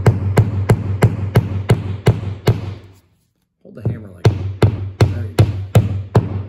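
Claw hammer tapping a plastic Wall Claw drywall anchor into drywall, driving it in flush. There are two runs of quick light taps, about three a second, with a short pause in the middle, each tap ringing briefly through the wall.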